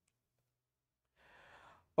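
Near silence, then a man's short, faint intake of breath just over a second in.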